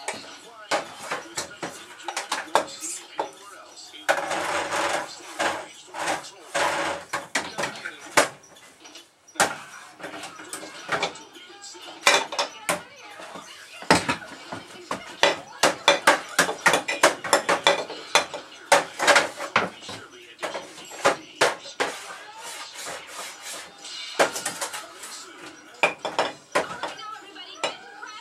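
Sound of the television programme heard through the small built-in speaker of an Orion CRT TV-VCR combo: voices and music, with frequent sharp clicks and knocks.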